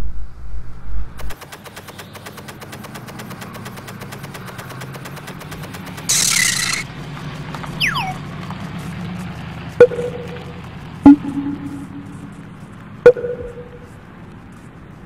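Cartoon sound effects for an animated ad: a musical sting cuts off about a second in, then a low steady hum with fast even ticking, a loud whoosh about six seconds in, a falling whistle, and three sharp hits, each leaving a short ringing tone.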